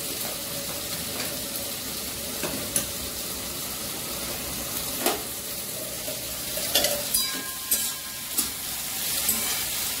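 Vegetables sizzling steadily in hot oil in a pan while a metal spoon stirs them. The spoon clinks against the pan a handful of times, more often in the second half.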